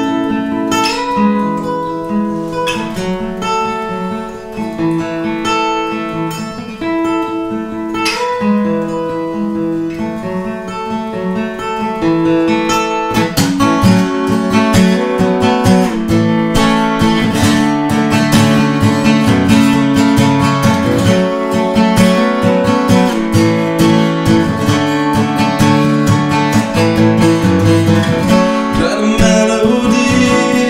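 Cutaway steel-string acoustic guitar played solo: sparser, quieter playing at first, then steady, fuller strumming that grows louder a little before halfway through.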